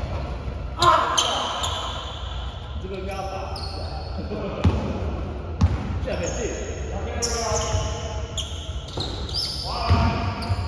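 Basketball bouncing on the gym floor a few times, with short high sneaker squeaks and players' voices calling out, echoing in a large sports hall.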